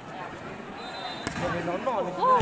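Spectators chattering around a volleyball court, with a single sharp smack of the volleyball a little past one second in; voices rise near the end.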